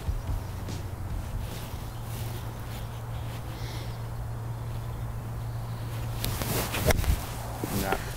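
Quiet open-air background with a steady low hum, broken by a few short sharp noises about six to seven seconds in.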